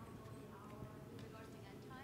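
Faint, distant voice off the microphone over the quiet room tone of a large hall.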